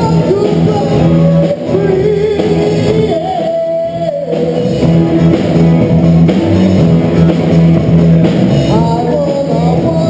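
Live rock band playing: electric guitars, bass and drum kit, with vocals and sustained, bending guitar or sung notes over a steady bass line.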